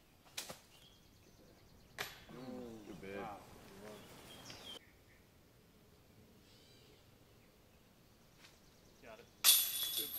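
A disc striking the chains of a disc golf basket near the end, a sudden loud metallic crash with a ringing jingle. It comes after a quiet stretch with faint voices a few seconds earlier.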